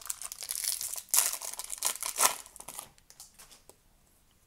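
Foil hockey-card pack wrapper crinkling and tearing as it is ripped open by hand, loudest about a second in and again around two seconds, then dying away near the end.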